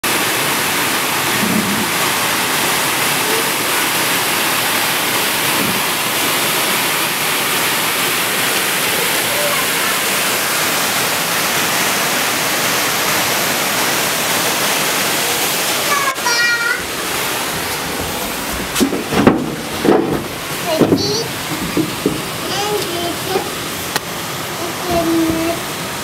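Steady, loud rush of water pouring over Decew Falls. About two-thirds of the way through it drops to a lower rush, and people's voices come in over it several times.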